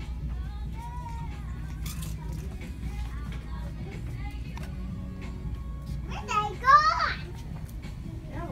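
Soft background music over a steady low hum of store noise, with a toddler's loud, high-pitched squeal about six and a half seconds in.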